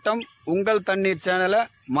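Steady, high-pitched chirring of insects in grassland, running under a man's speech.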